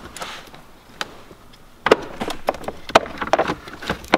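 Hard plastic clicks and knocks from a car's glove box and cabin air filter housing being opened by hand: a single click about a second in, then a run of sharper clicks and knocks over the last two seconds.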